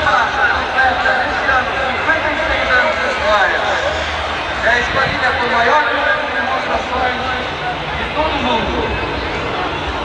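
Indistinct chatter of a crowd of spectators, voices overlapping with no clear words, over a steady low rumble.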